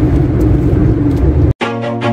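Car cabin noise while driving on a highway: a steady low rumble of engine and tyres. It cuts off abruptly about one and a half seconds in, and after a brief silence background music starts, with a steady run of notes.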